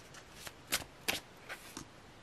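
Tarot cards being handled as a card is drawn from the deck: about five short, sharp card snaps and slides, the loudest near the middle.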